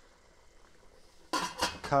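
A quiet stretch, then about a second and a half in, a metal lid clatters down onto a stockpot as the pot is covered.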